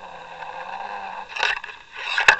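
A boat's engine heard underwater through a camera housing: a steady mechanical hum of several fixed tones. About one and a half seconds in, a brief rattling scrape on the camera housing.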